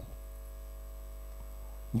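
Faint, steady low electrical mains hum from the microphone and sound system, with no speech over it.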